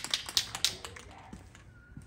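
Rust-Oleum camo aerosol spray paint can being shaken, its mixing ball rattling inside to mix the paint before spraying: a quick run of sharp clacks, loudest in the first second, then tailing off.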